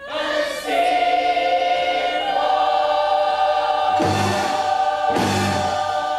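A large young people's choir singing a long held chord that swells after it comes in. About four seconds in, low accented beats from the accompanying band join it, then come again a second later.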